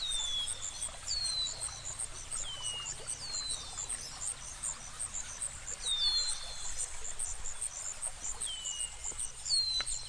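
Night-time nature ambience: insects, crickets by the sound, chirping in a rapid, even high-pitched pulse, with short falling whistled calls every second or so. A single sharp click near the end.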